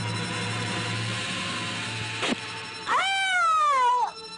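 Film-soundtrack music with a steady low drone. About two seconds in comes a quick falling swish, then a loud scream of about a second whose pitch rises and slowly sinks.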